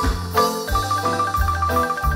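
Marimba band playing a lively hymn over a steady bass line. A high note is rolled with rapid repeated mallet strokes.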